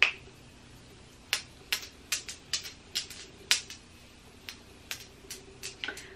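Pump-action makeup setting spray bottle misting the face: about a dozen short spritzes, a few per second, starting about a second in.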